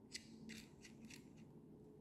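Faint small clicks of the bolts of a Peak Design Capture camera clip being unscrewed by hand, about six light ticks over two seconds.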